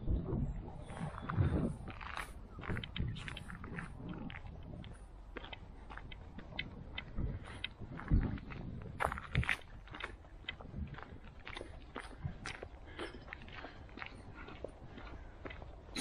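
Footsteps of a walker on an uneven path: irregular crunching clicks with a few heavier thuds.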